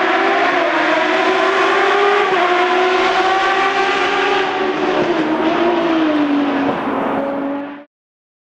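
A race car engine running at high revs, its pitch slowly rising and falling. It cuts off suddenly near the end.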